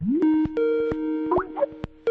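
Short electronic jingle: a tone glides up at the start into two steady held synth notes, with sharp clicks and quick rising chirps about one and a half seconds in.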